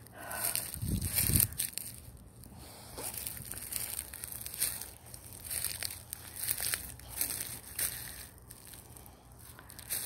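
Footsteps crunching through dry fallen leaves, an irregular crackle about every half second to second. There is a brief low rumble on the microphone about a second in.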